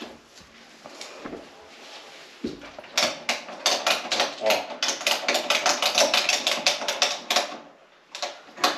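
A fast run of sharp clicks, about seven a second, from a Christmas tree stand being tightened around the trunk of a live tree, starting about three seconds in and stopping shortly before the end.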